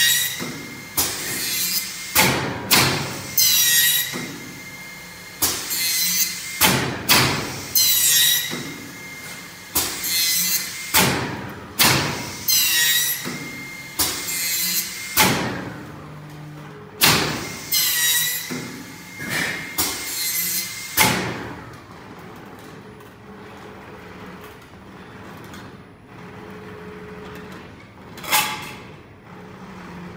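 YIKE BENDER CNC metal-strip bending machine working: a run of sharp mechanical clacks and short whirring feed strokes, about one a second, with a faint whine. About two-thirds of the way through it falls to a low hum, with one more clack near the end.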